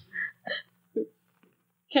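Three short, quiet vocal sounds, hiccup-like catches of a voice, spaced through the first second, in an old-time radio drama recording.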